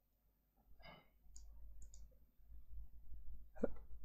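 Faint, sparse computer mouse clicks, with a soft mouth or throat noise from the narrator about a second in and another just before he speaks again near the end.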